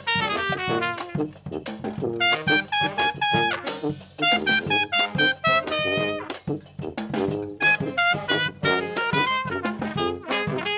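A street brass band playing a lively tune: trumpet leading over trombone, sousaphone and saxophones, with a bass drum and cymbal keeping the beat. The horns play short, detached notes in a quick rhythm.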